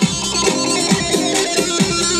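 Live dance music from a saz band: electronic keyboard and bağlama with a steady beat of low, falling-pitch drum hits, about two a second.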